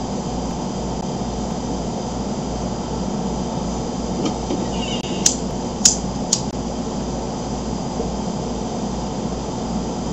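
Steady hiss and low hum of room and microphone noise, with three sharp clicks about half a second apart near the middle, a lighter being struck to light a tobacco pipe.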